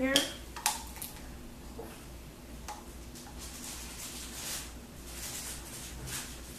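A few sharp clicks as a plastic water bottle is handled and opened, then a faint trickle of water being poured from it into a small amber glass bottle in the second half.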